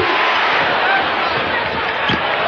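Basketball arena crowd noise: a steady, dense din of many spectators' voices during live play.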